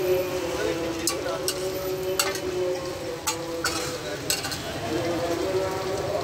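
Tikki and egg mixture frying on a large flat steel tawa griddle: a steady sizzle with sharp metal clacks of the spatula striking the griddle, about seven scattered through, and a steady low hum underneath.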